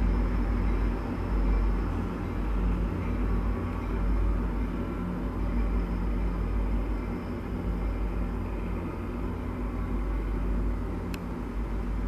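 Diesel train moving away, its engine a steady low drone that slowly grows fainter. A single faint tick sounds near the end.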